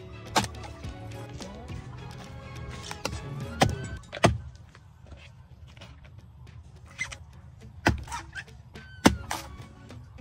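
An axe chopping into a rotten log: about six strikes at uneven intervals, the loudest in the middle and near the end. Background music plays under the first few seconds.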